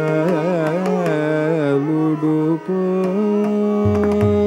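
Carnatic vocal singing by a male voice: ornamented, sliding phrases for about two and a half seconds, then a long held note. The mridangam strokes drop out and come back in just before the end.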